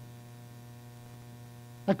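Steady electrical mains hum with a faint buzz in the recording, and a man's voice starting with one word near the end.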